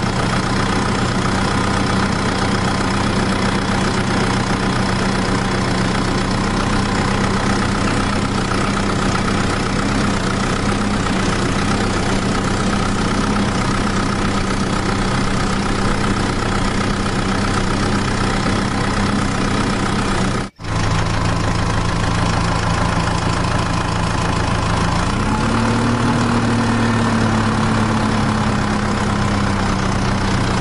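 Engine idling steadily with an even, continuous note. It cuts out for a split second about twenty seconds in, then picks up slightly in pitch a few seconds later and eases back down.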